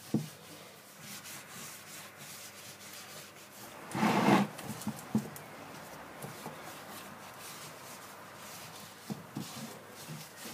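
A cloth rag in a gloved hand wiping sanding sealer over carved wooden panels: soft, repeated rubbing on the wood, with one louder half-second rub about four seconds in and a few light knocks.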